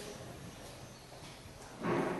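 Faint steady background hiss in a short pause between spoken phrases, with speech starting again at the very end.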